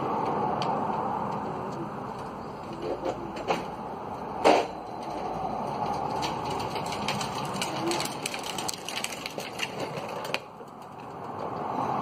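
Knocks and clatter as a drift trike is pulled out of the garage, with one sharp knock about four seconds in and a run of light rapid clicks and rattles later on, over a steady outdoor hiss.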